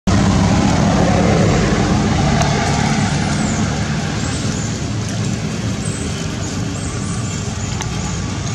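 A motor vehicle running nearby: a steady low rumble with road noise that starts loud and fades slowly.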